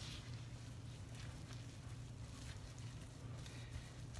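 A spoon stirring and working a stiff oat-flour dough in a ceramic mixing bowl: faint, dull scrapes and knocks as the thick dough is turned, over a steady low hum.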